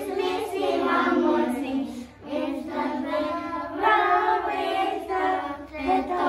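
A group of young children singing a song together without instruments, in held phrases with short breaks about two seconds in and near the end.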